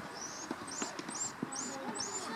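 Three sharp knocks of a tennis ball during play, struck by a racket and bouncing on the court, spaced unevenly through the two seconds.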